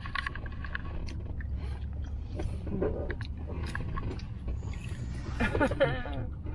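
Crispy fried chicken crunching as it is bitten and chewed, with scattered short crackles over a steady low hum inside a car. Brief laughter near the end.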